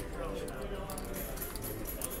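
Casino table background: a low murmur of distant voices, with faint light clicks of casino chips being handled on the felt.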